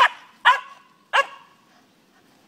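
French bulldog barking three times in quick succession at a swinging rope swing, short sharp barks, the last a little after the first two.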